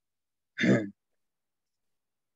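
One short, breathy vocal sound from a man, like a sigh, lasting under half a second about half a second in.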